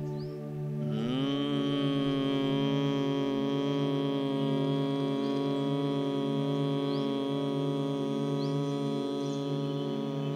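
A man's long, steady humming on the out-breath, the humming-bee breath of Bhramari pranayama done with the fingers closing the ears, eyes and mouth. It begins about a second in with a slight rise in pitch, then holds on one note. Faint bird chirps come through a few times.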